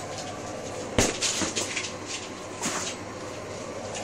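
A dog scrambling after a ball on a tiled floor: a sharp knock about a second in, followed by lighter clicks and scuffs of the dog and ball on the tiles.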